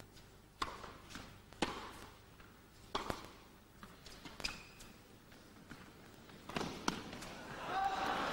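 Tennis rally on an indoor court: a serve, then sharp racket strikes on the ball roughly every second and a half, with softer ball bounces between. Applause starts to rise near the end as the point ends.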